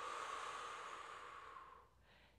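A woman's long, audible breath out, loudest at the start and fading away over about two seconds.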